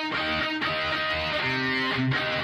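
Distorted electric guitar in drop C tuning playing a palm-muted metalcore riff, chugging power chords that drop to heavier low-string chugs near the end.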